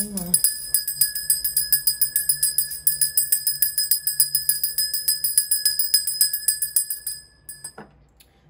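A small metal bell rung rapidly and continuously, about eight or nine strikes a second with a bright, sustained ring, used to cleanse the space. It stops shortly before the end, and a few light clinks follow.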